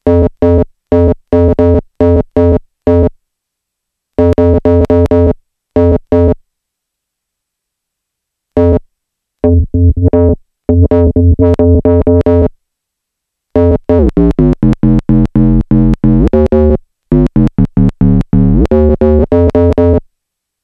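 Elektron Machinedrum UW playing back a sampled FM synth tone as short, abruptly cut notes in groups with silent gaps. About two-thirds of the way in it switches to rapid retriggered notes, and the pitch shifts and glides as the settings are adjusted.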